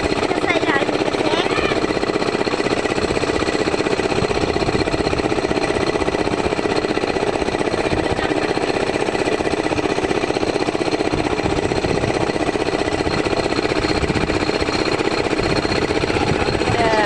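An engine aboard a fishing boat running steadily with a rapid, even knocking.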